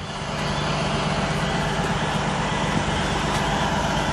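Steady drone of a motor vehicle's engine running, with a constant low hum, at an even level.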